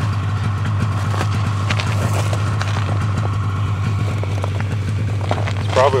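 A vehicle engine idling: a low hum that holds steady throughout, with a few faint ticks over it.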